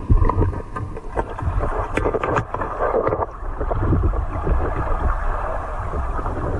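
Muffled underwater sound picked up by a camera in a waterproof housing: a low, uneven rumble of moving water with scattered clicks and knocks, a cluster of them about two seconds in.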